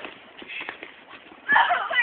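Footsteps crunching and scuffing in snow, then a loud, high-pitched voice with wavering pitch breaks in near the end.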